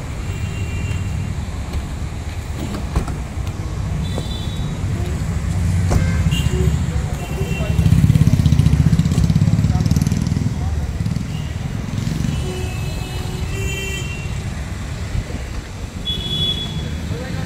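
Street sound around a stationary car: a steady low rumble of car engine and traffic, swelling for a couple of seconds midway, with people talking in the background and a few short high tones.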